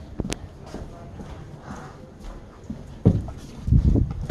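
Footsteps and knocks from a phone held in the hand while walking, with two heavy thumps near the end.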